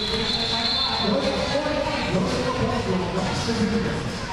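Murmur of many voices from the crowd and players in a large, echoing indoor hall, with a faint steady high tone that fades out about a second and a half in.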